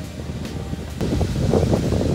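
Wind buffeting the microphone: an uneven rumble that grows louder about a second in.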